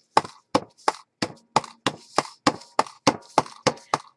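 A stamp on a clear block tapped down again and again on paper over a cutting mat, as a border pattern is stamped quickly around a page edge: about a dozen sharp taps, roughly three a second.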